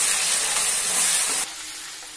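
Chopped tomatoes sizzling in hot oil with fried onions in a pan as they are stirred in with a wooden spatula. The sizzle drops abruptly to a quieter hiss about one and a half seconds in.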